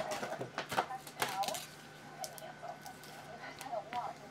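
Trading cards and a clear plastic card holder being handled, with a few sharp clicks and taps in the first second and a half. Faint voices run underneath.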